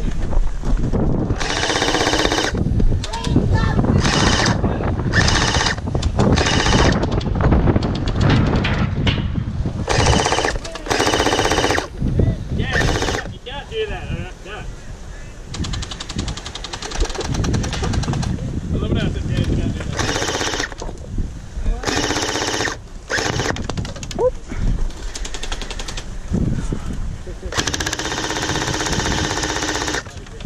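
Electric gel blasters firing on full auto in repeated bursts of a second or two each, a fast buzzing rattle of motor and gearbox.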